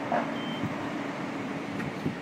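Steady low hum of street traffic, like an idling engine nearby, with a single short, faint high beep about half a second in.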